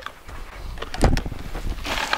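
A sharp knock about a second in, then a shovelful of compost tipped into a plastic sifting tray near the end, over a low rumble.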